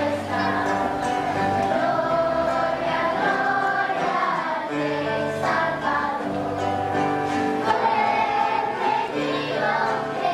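Children's choir singing a son segoviano, a Nicaraguan folk song, with instrumental accompaniment and a steady repeating bass line.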